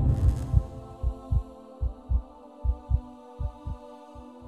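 Heartbeat sound effect: paired lub-dub thumps a little faster than once a second, over a steady low drone. The beats grow fainter near the end.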